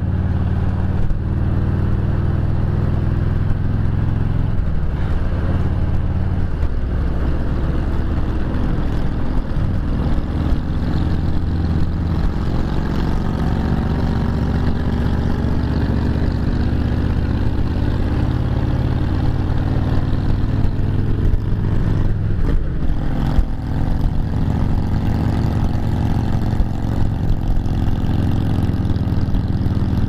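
Harley-Davidson touring motorcycle's V-twin engine running steadily under way while climbing a grade, with continuous wind and road noise on the bike-mounted microphone.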